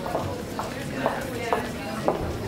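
Hospital nurses' station ambience: indistinct background voices with several sharp clicks or knocks spaced irregularly, about three or four in two seconds.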